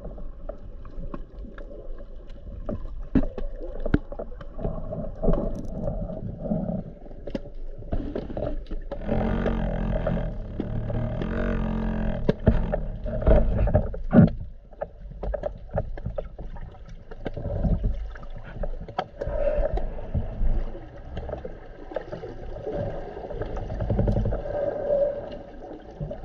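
Muffled underwater sound picked up through a camera's waterproof housing: water rushing and sloshing as the swimmer moves, with scattered knocks and taps on the housing. A low hum lasts several seconds near the middle.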